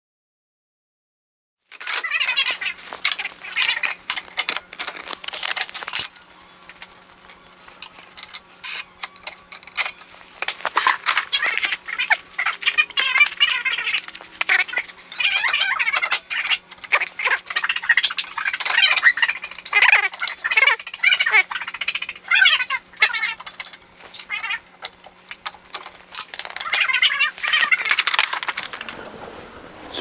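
Steel dado blade chippers, arbor washer and nut clinking and scraping against each other and the table saw's cast-iron top as a stacked dado set is taken apart and rebuilt on the saw arbor. The clatter comes in quick, irregular strokes, with some short metallic squeaks, starting about two seconds in.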